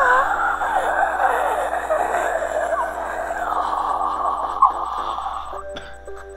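Many overlapping voices wailing and crying out at once, with the beat dropped out; it cuts off suddenly about five and a half seconds in.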